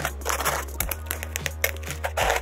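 A cardboard parcel sealed with clear packing tape being cut and torn open by hand with a small blade: a run of scratchy rasps, crackles and short tearing sounds.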